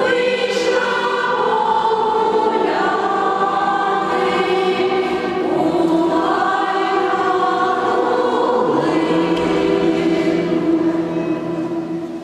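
Women's folk choir singing unaccompanied in several parts, holding long sustained chords that shift in pitch. The final chord dies away near the end.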